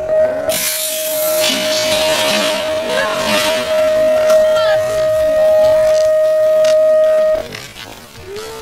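BMX start-gate cadence slowed to a third of its speed: one long, low, steady electronic tone holds and stops suddenly about seven seconds in. About half a second in, the metal starting gate drops with a loud clatter and the riders ride off.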